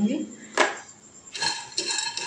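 A spatula knocking and stirring raw peanuts in a shallow non-stick frying pan as they begin dry-roasting: one sharp knock about half a second in, then the nuts scraping and rattling against the pan near the end.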